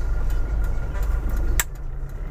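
A vehicle driving along a highway, heard from inside: a steady low rumble of engine and road noise with a faint steady high tone. There is a single sharp click about one and a half seconds in.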